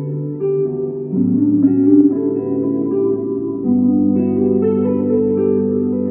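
Electric guitar played through a solid-state Marshall amplifier, with layered loops of sustained chords under improvised notes. The low note shifts about a second in and again near four seconds.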